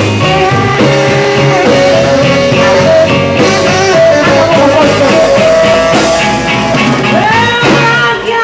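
Live band playing a blues/R&B number, with a sustained melodic lead line over bass and drums and no words sung.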